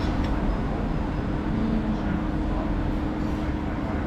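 Steady low rumble of a heavy vehicle running on the street close by, with a constant low hum over it.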